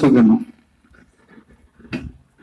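A man's voice speaking loudly and forcefully, the phrase ending about half a second in; a pause with only faint low sounds follows, and a short sharp sound comes near the end.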